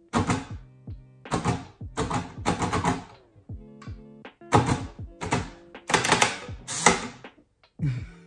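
Manual braille writer being typed on: its keys are pressed and struck in quick irregular clusters of sharp mechanical clunks, embossing braille onto paper. Steady background music runs underneath.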